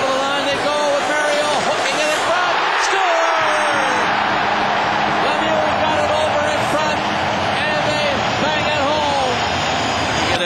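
Hockey arena crowd cheering a goal: a loud, steady roar of many voices.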